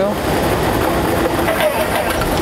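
Lottery ball-draw machines running steadily, giving a constant mechanical clatter of the machine and its tumbling balls.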